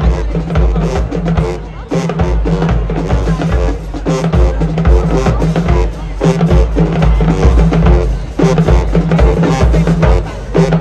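High school marching band playing at full volume: sousaphones and brass over a drumline, with bass drums pounding out a steady beat.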